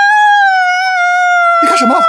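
A woman's long, high-pitched cry of "ah", held without a break and sinking slowly in pitch. It is a feigned cry of pain: she clutches her cheek as if struck, though she was not touched. A man's voice cuts in briefly near the end.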